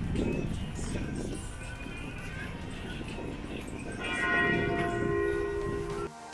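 Outdoor street sound with a rough, gusting rumble, typical of wind on a phone microphone, under faint music. About four seconds in, several steady tones begin and hold together, then cut off abruptly.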